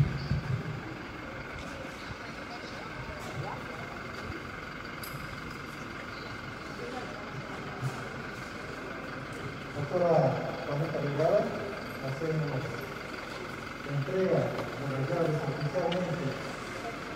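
Steady background noise for about ten seconds, then a man speaking into a handheld microphone in two short stretches, which are the loudest sounds.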